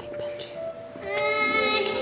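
Music: a high solo voice singing, with a held note rising in about halfway through over steady, sustained accompaniment chords.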